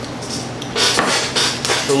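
Short knocks and clinks of beer glasses against a wooden bar top during the second half, as a glass of dark lager is set down.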